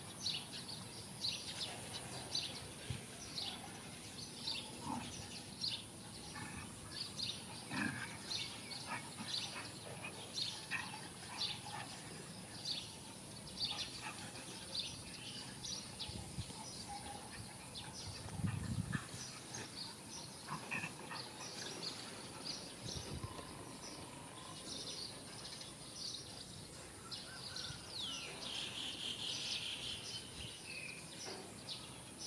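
Small birds chirping over and over against a steady high insect drone, with a few short low sounds in the middle, the loudest about eighteen seconds in.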